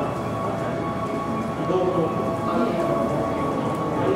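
Indistinct talk of people in an indoor public space, over a steady hum.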